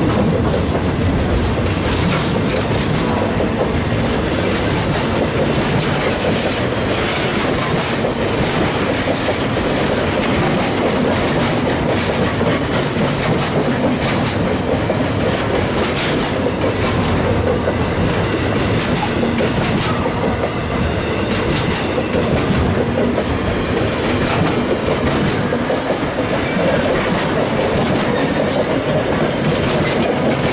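Loaded railroad flatcars of a freight train rolling past close by: a steady, loud rumble of steel wheels on the rails, with scattered sharp clicks from the wheels and trucks.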